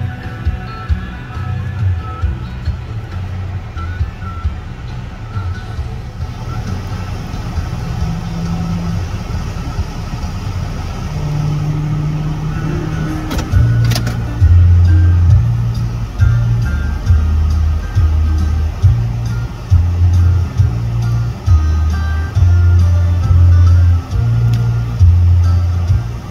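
Music playing over a car radio inside the car's cabin, its bass line turning much heavier and more prominent about halfway through.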